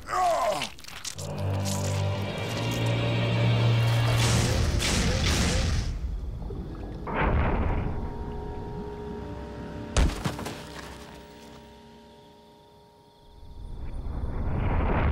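Cartoon soundtrack: background music with a strong bass note and swishing sound effects, a single sharp hit about ten seconds in, then a held chord fading away.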